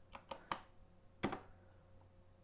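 A few separate clicks of computer keyboard keys being pressed, the loudest a little past halfway.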